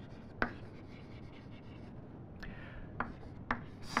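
Chalk writing on a blackboard: faint scratching strokes with several sharp taps as the chalk strikes the board.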